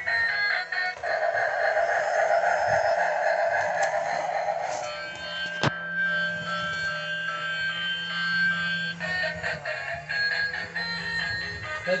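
Musical Bump 'n' Go toy bubble train running and playing its built-in electronic sound effects and tune, over a steady motor hum. A rushing noise lasts about four seconds, then a tune of steady electronic tones follows, with a sharp click in between.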